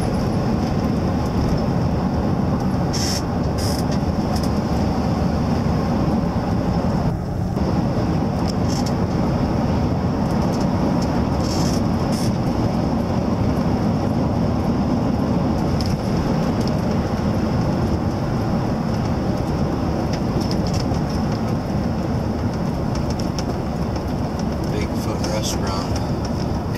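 Steady road and engine noise inside a moving Ford E-350 van's cabin, with a brief dip about seven seconds in and a few faint clicks.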